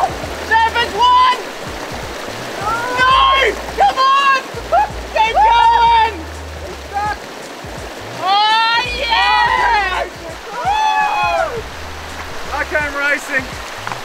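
Shallow mountain stream running over rocks, with splashing as a man wades through it. Excited shouting and cheering voices come and go over the water throughout.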